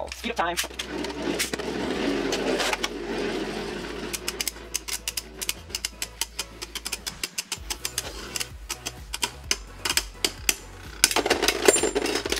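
Two Beyblade Burst spinning tops in a plastic stadium: ripcord-launched at the start, they whir steadily, then knock together in many sharp plastic clicks that come thickest near the end, when one top bursts apart.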